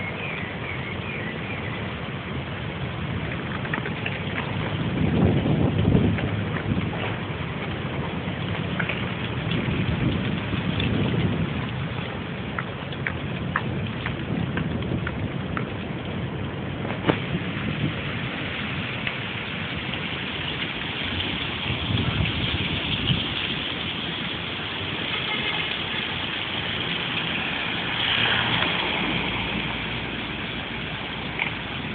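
Steady hiss of rain falling on concrete paving, with scattered drop clicks. Low rumbles swell and fade four times, about 5, 11, 22 and 28 seconds in.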